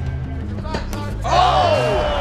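Background music with a steady low bass line. About a second and a half in, a fight commentator's loud exclamation, falling in pitch, breaks over crowd noise.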